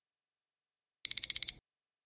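Countdown-timer alarm sound effect as the quiz timer reaches zero: a quick half-second burst of rapid, high-pitched electronic beeps about a second in.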